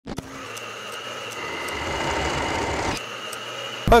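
Motorcycle riding noise heard from the rider's helmet camera: a rushing of wind and road that grows louder for about three seconds, then drops back.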